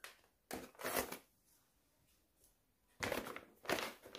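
Plastic kit pouch being opened by hand, crinkling and rustling in short bursts with a quiet gap of about two seconds in the middle.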